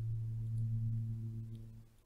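Steady low electrical hum with a few faint overtones above it, fading out near the end.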